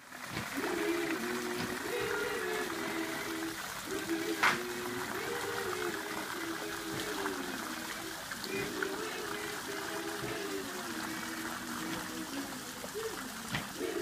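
A group of voices singing a welcome song in harmony, phrase after phrase, over a steady hiss. A sharp click sounds about four seconds in.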